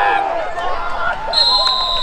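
A referee's whistle gives one steady high blast of about a second, starting a bit past halfway, over players' shouting; it blows the play dead after a tackle.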